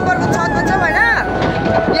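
People's voices over a steady humming drone with a constant whine, one voice giving a rising-then-falling call about a second in.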